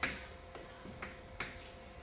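A stick of chalk writing on a chalkboard. There are three sharp taps, at the start, about a second in and a little after, each trailing off into a short scratch as a stroke is drawn.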